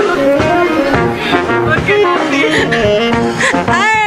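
Live brass band playing an upbeat Latin tune: trumpet, trombone, tuba, alto and tenor saxophones over a drum kit. A voice joins near the end.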